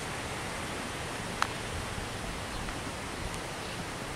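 Steady outdoor wind rush across the microphone, with one sharp click about a second and a half in.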